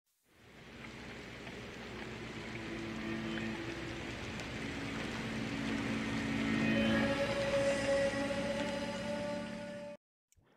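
Atmospheric logo-intro music: sustained held tones over a rushing, noisy swell that fades in, grows louder, and cuts off abruptly at the end.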